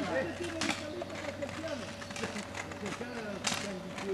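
Indistinct voices calling out, with two sharp clicks, one under a second in and one near the end.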